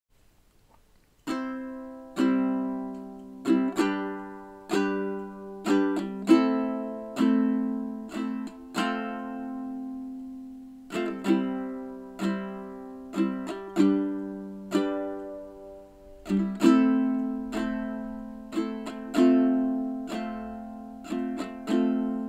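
Solo plucked string instrument playing an instrumental introduction, starting about a second in: picked chords and single notes, each struck sharply and left to ring and fade, about one or two a second.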